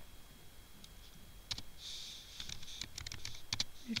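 Typing on a computer keyboard: a few scattered keystrokes, then a quicker run of keys in the second half.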